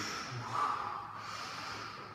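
A man's forceful breath through the nose, a snort about half a second in, as he braces over a loaded barbell before a deadlift rep.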